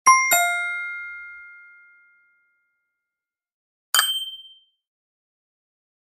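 Descending two-note chime, struck in quick succession and ringing out for about two seconds. About four seconds in comes a short, fast tinkling flourish.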